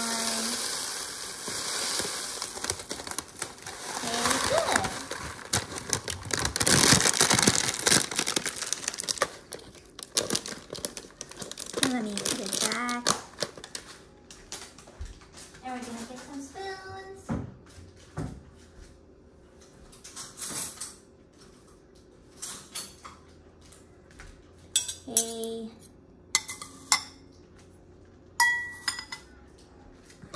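Cocoa Pops puffed-rice cereal pouring from a plastic bag into a ceramic bowl, a dense rattling hiss that is loudest over the first several seconds. Later come scattered sharp clinks of metal spoons against the ceramic bowls.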